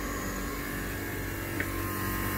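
Steady hum of a home-built heat pump running, with its blower turned down to low speed and the drive at 50 hertz. Several held tones sit over the hum, and there is a faint tick near the end.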